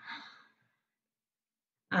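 A woman's short breath out, fading away over about half a second, followed by dead silence; speech ("um") begins right at the end.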